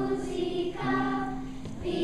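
Children's choir singing slow, sustained notes, with short breaks between phrases.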